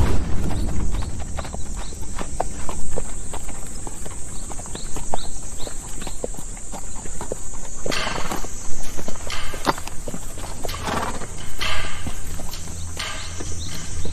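Horses' hooves clip-clopping on a dirt track as two horses are ridden along, with a horse neighing several times in the second half.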